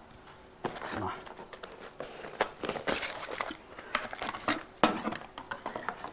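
A small cardboard box being opened and a diamond grinding cup unpacked: irregular rustling and crinkling of packaging with many small clicks and knocks.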